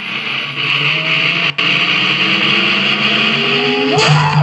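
Cartoon soundtrack sound effect: a steady hiss with several slowly rising whining tones, broken by a brief dropout about a second and a half in.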